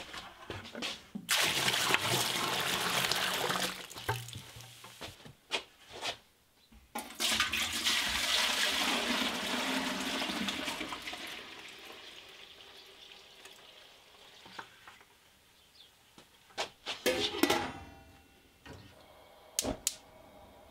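Milk pouring from a plastic bucket into a stainless steel stockpot in two runs: a short pour about a second in, then a longer one from about seven seconds in that slowly trails off. A few sharp clicks and knocks near the end.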